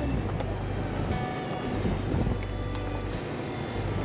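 Steady low rumble of a car driving, heard from inside the moving vehicle, with music playing over it.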